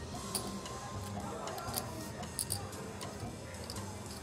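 Low background music bed with scattered, irregular sharp clicks of clay poker chips being handled and stacked.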